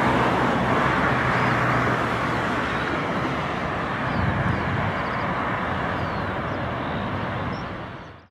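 Steady rushing ambient noise with a low hum beneath it and a few faint short chirps high up. It stops abruptly just after the end.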